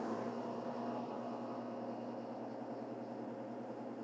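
Diesel engine of an Epiroc PowerROC T35 drill rig idling steadily just after being started with the key, a smooth even whir that eases slightly in level as it settles.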